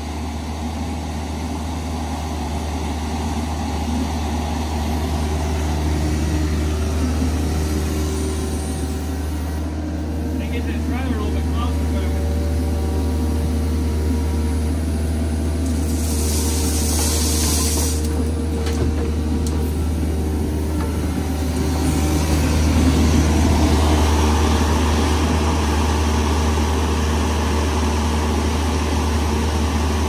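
Kubota mini excavator's diesel engine running steadily as its hydraulics swing and work the arm. About sixteen seconds in, gravel pours out of the bucket for about two seconds, and a few seconds later the engine gets louder under load.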